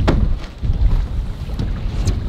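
Wind buffeting the microphone: a steady, fairly loud low rumble, with one sharp knock right at the start.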